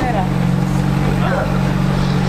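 An engine idling with a steady low drone, under brief snatches of speech.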